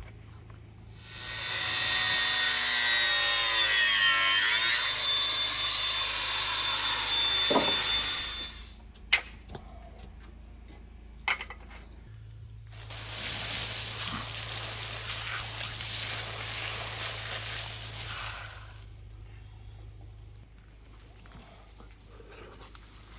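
Angle grinder cutting through square fibreglass composite tube, twice: a cut of about seven seconds with the motor's whine dipping as the disc bites in, then two sharp knocks, then a second cut of about six seconds.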